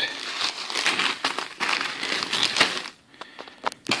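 A clear plastic bag holding dehydrated beans being handled: the plastic crinkles and the dry beans shift and rustle inside, with many small clicks. It goes quiet about three seconds in, and there is one more click just before the end.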